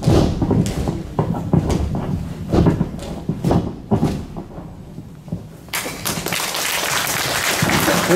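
Sharp thuds and snaps from a Bak Mei martial artist's stamping footwork and explosive strikes on a sports-hall mat, one or two a second. The strikes stop about five seconds in, and a steady rushing noise sets in suddenly soon after.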